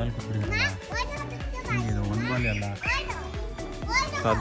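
Children's voices shouting and calling in high, rising and falling cries, over steady background music.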